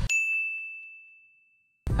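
A single bright ding, a bell-like chime struck once, ringing on one clear high note and fading away over about a second and a half.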